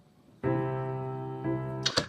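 Grand piano striking a sustained chord about half a second in and letting it ring and slowly fade, with a second chord near the end, then cut off abruptly.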